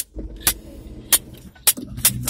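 A car moving slowly, heard from inside the cabin as a low rumble, with four sharp clicks about half a second apart.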